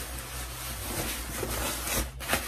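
A hand rubbing over the nylon shell of a puffer jacket, a steady rustling scrape of fabric with small swells.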